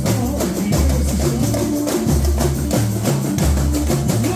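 Samba bateria playing a samba-enredo: surdo bass drums strike deep, regular beats about every second and a bit under a dense, driving layer of snare and hand percussion.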